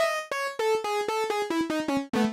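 Arturia CS-80 V4 software synthesizer playing a bright lead patch with only its first oscillator set up, on a pulse wave with pulse-width modulation, noise, high-pass filtering and resonance. It plays a quick line of short, re-struck notes that steps down in pitch.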